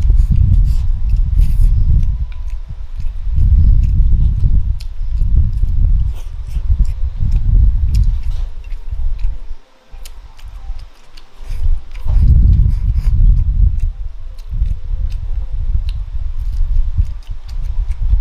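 Close-miked chewing and mouth sounds as mouthfuls of rice and braised pork belly are eaten, in a steady rhythm with small sharp clicks throughout. The chewing pauses briefly about ten seconds in.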